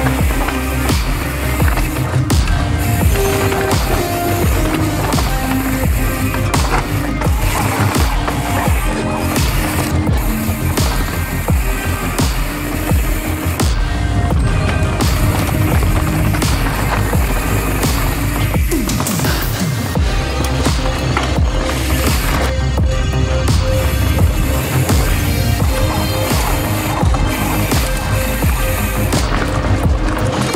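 Mountain bike tyres rolling and rumbling over a dirt trail, mixed with upbeat background music that plays throughout.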